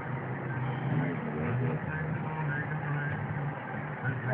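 A motor vehicle's engine running, a low steady hum that shifts slightly in pitch, with faint voices over it.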